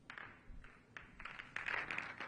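Pool balls clicking against each other as the referee racks them for the next frame: a run of separate light clicks that turns into a quick, louder cluster near the end.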